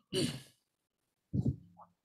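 A man lets out a breathy sigh just after sipping water from a glass. About a second later comes a short, low voiced sound from his throat.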